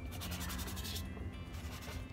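Paintbrush scrubbing oil paint across a canvas, a dry rasping rub that is busiest in the first second and then eases off.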